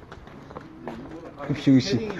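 People laughing, quietly at first and louder near the end.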